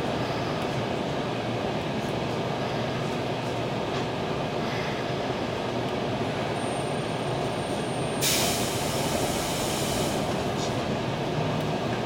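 Steady rumble inside a Nishitetsu electric train carriage. About eight seconds in, a loud hiss of released compressed air from the train's air system cuts in and lasts about two seconds.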